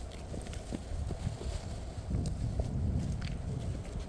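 Footsteps of rubber boots on loose flat stones and rock, a scatter of irregular knocks and scrapes, over a steady low wind rumble on the microphone.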